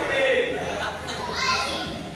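Children in a small audience shouting out in high-pitched voices, with two short yells, one at the start and another about a second and a half in.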